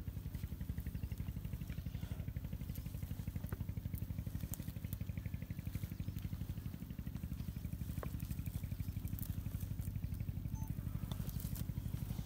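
Steady low rumble of an idling engine, with faint scattered clicks and crackles over it.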